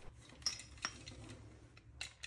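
Faint handling noise of a plastic dimmer switch and its wires being moved in the hands, with two small clicks, one about half a second in and one near the one-second mark.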